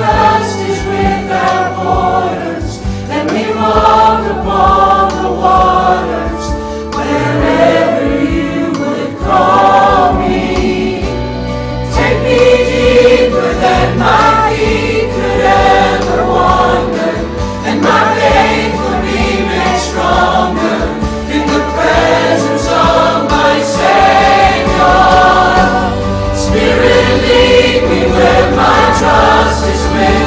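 Church choir and congregation singing a hymn in held notes, with piano accompaniment.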